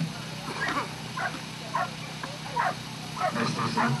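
Border collie giving a string of short, high yips and barks, one every half second to a second, eager for the frisbee held above it.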